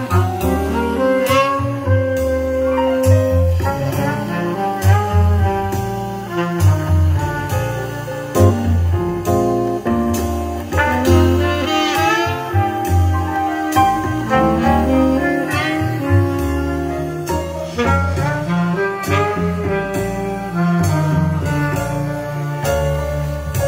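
Jazz recording with saxophone over a double bass line, played loudly in mono through a home-built loudspeaker: a JBL 2440 compression driver on a JBL horn, a Yamaha woofer and a JBL 2402 bullet tweeter.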